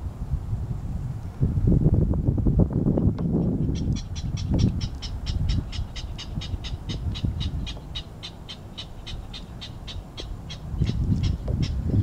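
Wind gusting on the microphone, strongest in the first few seconds, then a bird calling a long run of short, evenly spaced notes, about four a second, from about four seconds in until the end.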